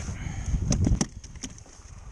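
Wind rumbling on the microphone, fading after about a second and a half, with a few sharp clicks and knocks from handling the catch on the kayak about a second in.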